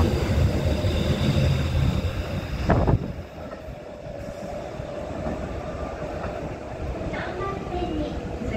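A red-and-white Kintetsu electric train running past close alongside the platform, a low rumble of wheels on rail. The rumble drops off abruptly about three seconds in as the last car clears, leaving only a faint steady hum.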